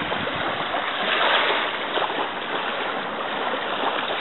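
Steady rushing noise of small waves washing onto a sandy shore, swelling slightly about a second in.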